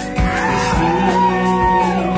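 Live rock band playing: kick drum on a steady beat under sustained chords, with a high lead line sliding up and down in pitch in repeated arcs.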